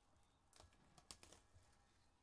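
Near silence with a few faint crinkles and light taps, clustered between about half a second and one and a half seconds in: a sealed trading-card box and its plastic wrapping being handled.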